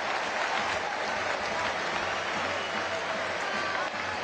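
Stadium football crowd clapping and cheering, a steady wash of noise, in reaction to a red card being shown.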